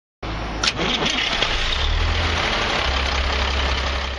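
Truck engine running, heard from inside the cab: a steady low hum under a noisy rumble, with a sharp click a little over half a second in.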